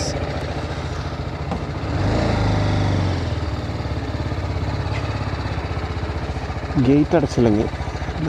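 TVS Apache RR 310 single-cylinder engine idling with an even, rapid pulse. About two seconds in it rises briefly under a little throttle, then settles back to idle.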